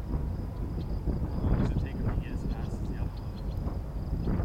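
Diesel freight locomotives approaching, a steady low rumble, with wind on the microphone.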